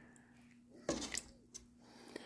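Faint, soft sloshing as a metal ladle stirs a pot of soup, a couple of brief sounds about a second in, over a faint steady hum.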